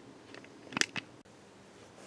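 Two short, sharp clicks close together just under a second in, the first louder: small hard objects handled on a workbench.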